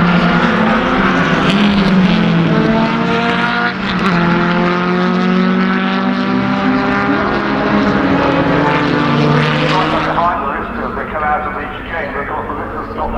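Historic racing car engines on the circuit accelerating, the pitch climbing steadily for several seconds, dropping back once about four seconds in and climbing again, then fading about ten seconds in.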